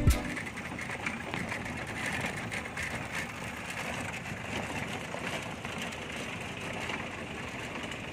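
A pedal trishaw (beca) in motion over brick paving: a steady rolling and rattling noise with many small clicks from the wheels and frame, against open street ambience.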